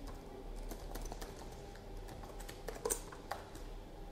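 Typing on a laptop keyboard: a run of light key clicks, with a few louder keystrokes about three seconds in.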